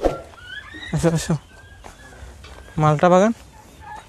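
Faint calls of free-range chickens, short thin rising chirps in the first second, between two brief bursts of a man's voice.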